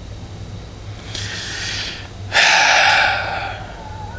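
A man breathing out heavily in exasperation: a soft breath about a second in, then a louder, longer exhale that fades away after about a second.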